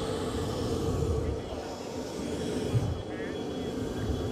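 Steady aircraft engine noise, a continuous hum and rumble, with indistinct voices beneath it.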